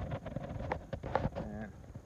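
A man's brief voiced hesitation sound, with a few short clicks about halfway through.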